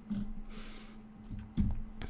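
A few keystrokes on a computer keyboard, the loudest about three-quarters of the way through, over a faint steady hum.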